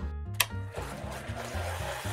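A Vitamix countertop blender switched on with a click about half a second in, then running steadily as it blends a spinach and banana smoothie.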